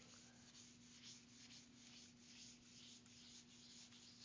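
Faint rubbing of a felt whiteboard eraser wiping marker off the board, in quick back-and-forth strokes about three a second. A low steady hum lies beneath it.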